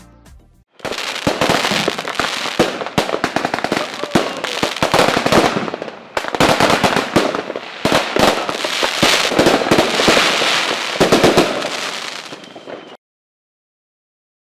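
Fireworks going off: a dense run of bangs and crackles that starts just under a second in and cuts off suddenly near the end.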